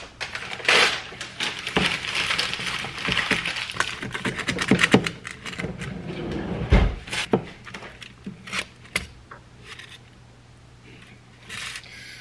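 Fork scraping and clicking against an aluminium foil pan, with the foil crinkling, as a pizza is cut and a slice pried loose. The busiest stretch is the first five seconds, with a single low thud a little before the middle, and it goes quieter near the end.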